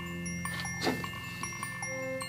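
Soft background music of held, chime-like bell tones.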